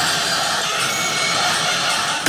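Electronic hardcore dance music in a breakdown: the kick drum and bass have dropped out, leaving a steady hissing synth noise wash with no beat.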